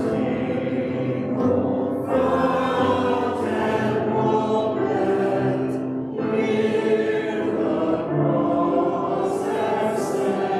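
Church choir and congregation singing a hymn with grand piano accompaniment, the sung lines held and joined by short breaths between phrases.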